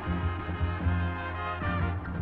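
Brass-led music score, with trombones and trumpets playing held chords over strong low notes.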